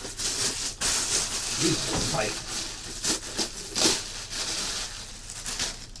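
Packaging wrap crinkling and rustling in bursts as a full-size football helmet is worked out of its box and wrapping.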